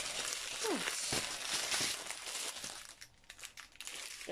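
Clear plastic bag and the small plastic packets of diamond-painting drills inside it crinkling as they are handled and tipped out. The crinkling dies down about three seconds in.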